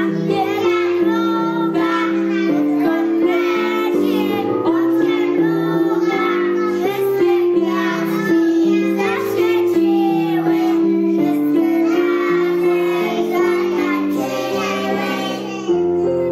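A song sung by young children's voices over a steady instrumental accompaniment.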